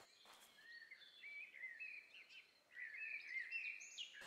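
Small birds singing in quick, chirping phrases, faint, over a low outdoor background hiss.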